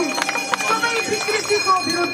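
A woman speaking Nepali into a handheld microphone, her voice carried over an outdoor crowd.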